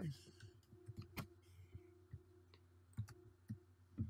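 A few faint, scattered clicks of a computer mouse and keyboard over a low steady hum, the clearest a little over a second in.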